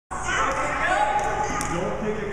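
Indistinct voices chattering in a large, echoing gymnasium, with a couple of short knocks about a second and a half in.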